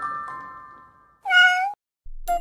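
A cat gives one short meow a little over a second in, bending slightly in pitch, as chiming glockenspiel music fades out.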